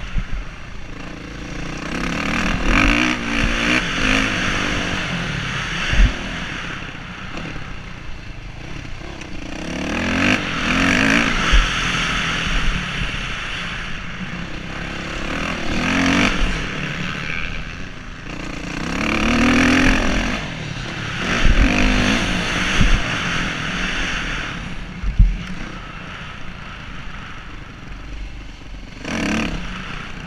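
Motocross dirt bike engine heard from the rider's helmet camera, revving up and dropping back again and again as the bike accelerates and slows around the track. Two sharp knocks stand out along the way.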